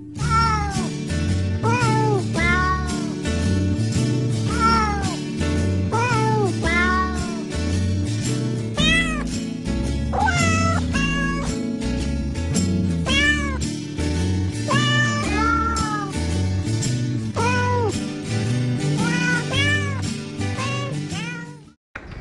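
Novelty Christmas song sung with cat meows: a string of meows set to a tune over a backing track with a steady bass line. It cuts off abruptly near the end.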